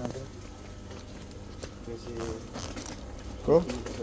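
Indistinct voices in conversation over a low steady hum, with one short loud vocal sound about three and a half seconds in.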